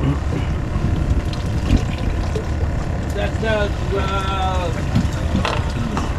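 Steady low rumble aboard a wooden fishing boat at sea, with faint voices calling in the middle.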